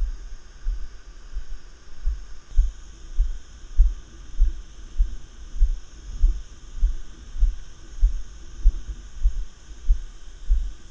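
Walking footsteps carried up through the body into a head-mounted GoPro Hero 3, heard as dull low thuds at an even pace of about one every 0.6 seconds, over a faint steady hiss.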